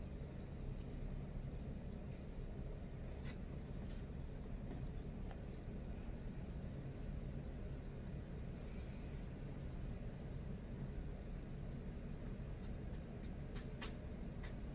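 Quiet hand work with fabric and pins: a soft rustle of cloth and a few faint clicks, two about three to four seconds in and several near the end, over a steady low room hum.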